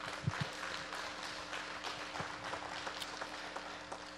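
Congregation applauding: many hands clapping in a steady patter that eases slightly near the end.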